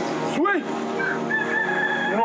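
A rooster crowing, with a quick rising-and-falling note about half a second in and then a long held note.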